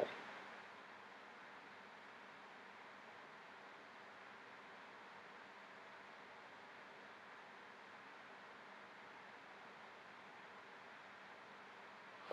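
Near silence: a faint steady hiss of room tone or recording noise.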